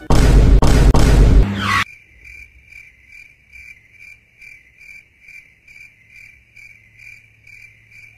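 A loud rushing burst of noise for nearly two seconds, then a cricket-chirping sound effect: a faint, even, high chirp repeating about three times a second.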